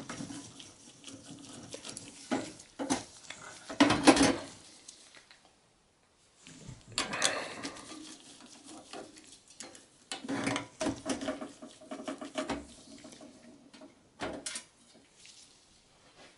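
A screwdriver working the screws out of a desktop PC's sheet-steel hard-drive cage: scattered metal clicks, scrapes and light rattles in several short bursts, with a brief silent pause a little before the middle.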